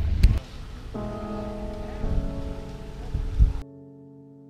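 Background music of sustained keyboard notes fades in about a second in over low outdoor rumble and handling noise from a body-worn camera. A knock comes just before the outdoor noise cuts off, leaving only the music.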